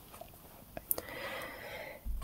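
A person's soft inhalation lasting about a second, just before speaking, preceded a little earlier by a couple of small mouth clicks.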